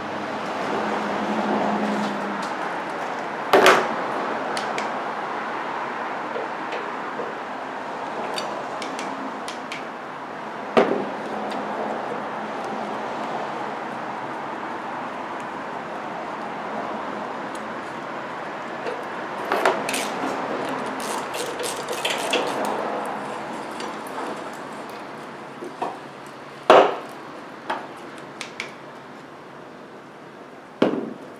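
Hand tools working on a car battery's terminal clamps and hold-down: scattered sharp metallic clicks and clanks of a ratchet and socket, with a run of quick clicks just past the middle, over a steady background noise.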